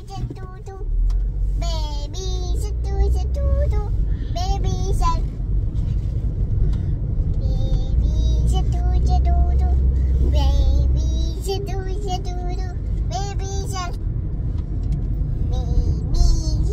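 A young girl singing in a high voice, in short phrases with some held notes, over the steady low rumble of a car's cabin on the move.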